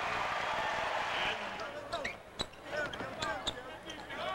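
Arena crowd noise after a made basket, dying down over the first second and a half. Then a basketball is dribbled on the hardwood court: a series of sharp separate bounces.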